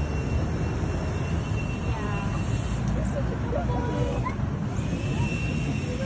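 Outdoor street ambience: a steady low rumble of traffic noise, with faint voices of people nearby now and then.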